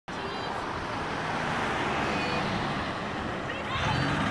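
Road traffic noise, with a van driving past. Voices come in near the end.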